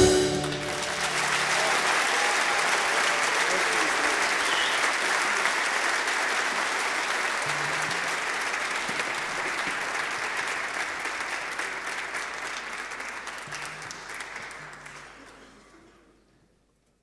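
Audience applauding in a concert hall just after the band's final note, the clapping steady and then fading away near the end.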